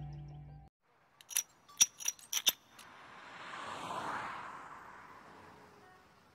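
Background film music that cuts off under a second in. It is followed by about seven sharp metallic clinks over a second and a half, then a rush of noise that swells to a peak about four seconds in and fades away.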